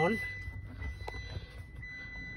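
A steady high-pitched electronic tone, held without a break, comes on as the car's ignition is switched on, over a low background rumble, with a single click about a second in.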